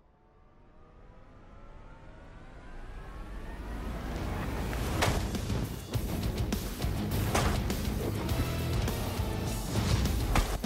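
Dramatic soundtrack music swells with rising tones, then goes on loud and dense under a blade slashing through hanging vines. There are sharp cutting strikes about five seconds in, again about two and a half seconds later, and once more near the end.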